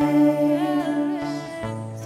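Live worship music: a female voice holding one long sung note that bends slightly in pitch, over acoustic guitar and low sustained notes that change about one and a half seconds in.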